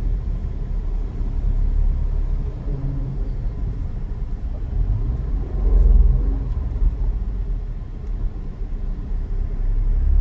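Steady low road and engine rumble of a moving vehicle, heard from inside its cabin, swelling briefly about six seconds in.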